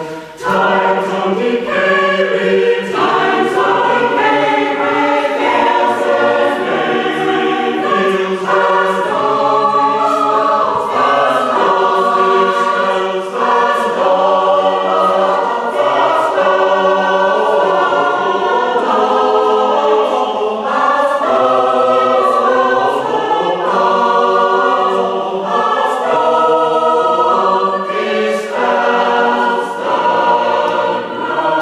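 Mixed choir singing a West Gallery piece in parts, with a short break between phrases just after the start.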